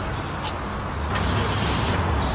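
Town street traffic: a steady rumble of road vehicles, with a couple of short sharper sounds about half a second and a second in.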